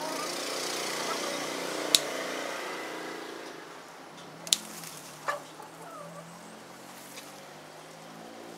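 Red-handled scissors snipping curry leaf stems: two sharp snips about two and a half seconds apart, then a softer one. Underneath, a background drone like a passing engine swells and fades over the first half.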